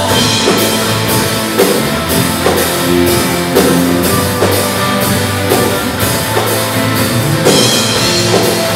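Live worship band playing: electric guitars over a drum kit keeping a steady beat, the cymbals striking about twice a second.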